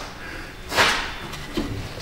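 A brief scraping noise about three-quarters of a second in, with a fainter one near the end: handling noise from work on the exhaust.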